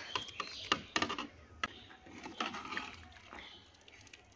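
Paneer cubes tipped off a steel plate into an iron kadhai of simmering gravy, giving a run of irregular clicks, knocks and light splashes in the first second or two. A steel ladle then stirs the gravy, with fewer, quieter knocks.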